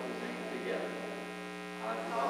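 Congregation reading a psalm response aloud in unison, distant and indistinct, over a steady electrical buzzing hum in the recording.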